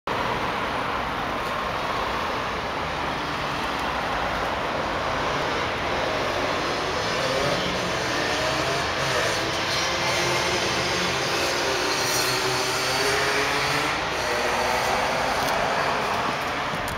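Steady rushing background noise of road traffic, with a vehicle's engine passing, its pitch gliding up and down in the second half.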